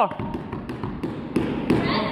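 A few soft hand taps on a foam floor mat, amid scuffling: a grappler tapping out under a stick choke to signal submission.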